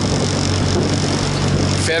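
A boat engine hums steadily under a loud rush of wind and water.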